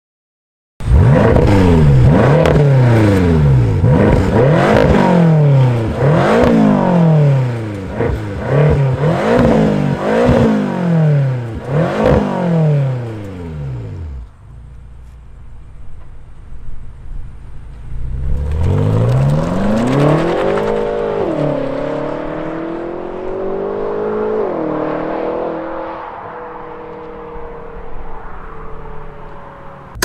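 BMW M6 Gran Coupé's 4.4-litre twin-turbo V8 revved again and again, its pitch rising and falling about every second and a half. After a quieter stretch it accelerates hard, the pitch climbing and dropping back twice at the upshifts, then running on more steadily.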